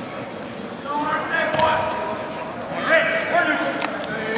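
Voices calling out across a gym, with a couple of sharp knocks, one about one and a half seconds in and one near the end.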